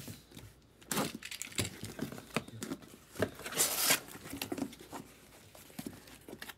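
Cardboard shipping case being handled and opened by hand: scattered scrapes, rubs and light knocks of cardboard, with one longer tearing scrape a little before four seconds in.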